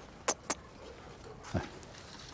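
Quick, sharp clicking steps on paving stones, about four or five a second, stopping about half a second in. A single soft low thump follows about a second later.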